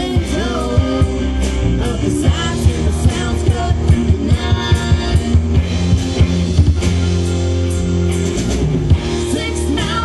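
A rock band playing electric and acoustic guitars over bass and a drum kit, with no sung words. The drum strikes come thickest through the middle.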